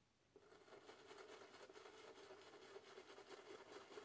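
Faint, rapid dabbing of a sponge stencil dauber on a plastic stencil over a canvas, several soft taps a second. It starts about half a second in and keeps going.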